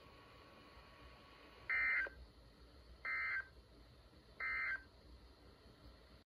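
Three short buzzing data bursts from a weather radio's speaker, each about a third of a second long and about a second and a half apart. They are the NOAA Weather Radio SAME end-of-message code that closes the warning broadcast.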